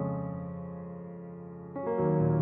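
Instrumental piano music: a held chord fades away, then a new chord is struck near the end.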